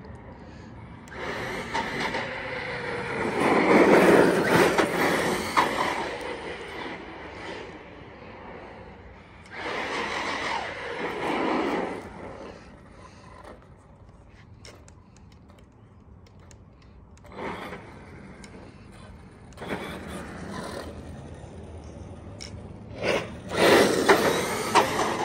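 Team Corally Kagama electric RC monster truck driving on asphalt on a 4S battery: its motor, drivetrain and tyres come and go in several bursts as it accelerates and slows, loudest about four seconds in and again near the end.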